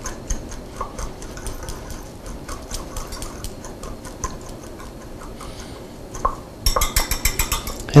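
A small metal utensil stirring a dry spice-and-sugar rub in a small glass bowl: faint scattered clinks, then a quick run of about ten clinks a second near the end.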